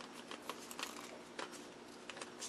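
Faint rustling and a few light clicks of a thin styrene plastic strip being handled and bent around a plastic disc.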